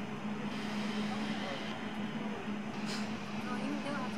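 Indoor ice rink background: a steady low hum over a constant hiss, with faint voices. About three seconds in there is a brief scrape of a figure skate blade on the ice.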